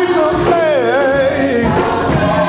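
Live gospel choir music with a male lead singer; his voice glides down and back up in a long run near the middle.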